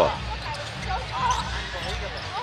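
Basketball being dribbled on a hardwood court, repeated bounces over the steady background noise of an arena crowd.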